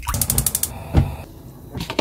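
Water poured from a plastic bottle into a pot of raw pork back ribs. The bottle gives a quick run of crackling clicks in the first moments, and then the pour goes on more softly.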